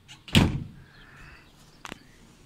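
A sharp knock or bang about a third of a second in, dying away over a fraction of a second, then a brief click near the end.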